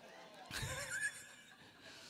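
Brief, faint laughter about half a second in, lasting about half a second, in an otherwise quiet pause.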